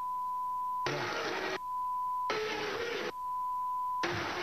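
Broadcast censor bleep: a steady tone near 1 kHz sounding three times, each lasting most of a second, blanking out words. Short stretches of studio noise with voices break through between the bleeps.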